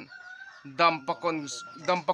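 A woman talking, starting a little under a second in. Behind her voice runs a faint, long, high steady tone.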